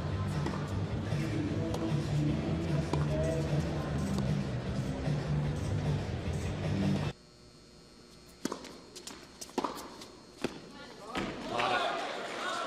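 Background music that cuts off abruptly about seven seconds in. It gives way to a quiet indoor arena where three sharp knocks about a second apart are heard: a tennis ball bounced on the hard court before a serve.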